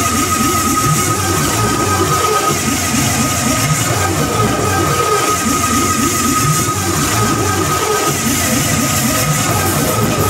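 Live electronic music played over a concert PA, heard from the audience: dense, churning low textures under a steady high tone that holds throughout.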